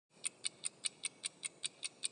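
Quick, even ticking like a clock, about five sharp high ticks a second, starting a moment in: a ticking sound effect under an animated logo intro.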